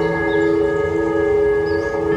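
Ambient electric guitar music on a Schecter guitar: long sustained notes that blend into a steady chord, with a new chord coming in right at the start.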